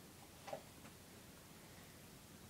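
Near silence: room tone, with a faint short click about half a second in.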